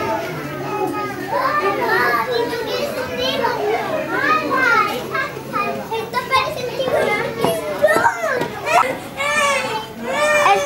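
Many children's voices talking and calling out at once, overlapping in a busy, continuous chatter.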